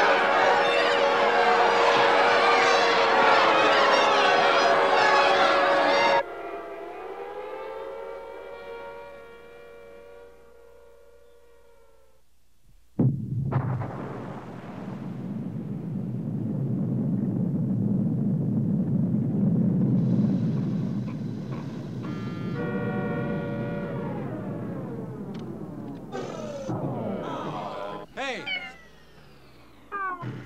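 Film soundtrack of a nuclear attack: a panicking crowd's shouting over wailing civil defense sirens cuts off about six seconds in, leaving the sirens winding down in pitch and fading almost to silence. About thirteen seconds in, a sudden blast opens a long, deep rumble of the nuclear detonation that builds and then slowly dies away.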